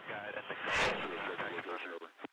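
Radio voice traffic, thin and telephone-like, with the words not clearly made out, and a short louder burst of noise about three-quarters of a second in.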